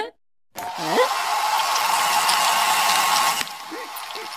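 Electric hair dryer blowing, a steady rushing hiss with a thin whine, switching on about half a second in and dropping to a lower level shortly before the end.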